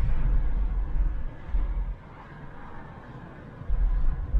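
Cabin noise of a 1992 Volvo 940 Turbo on the move: a low rumble of engine and road. It drops away for a couple of seconds midway and comes back near the end.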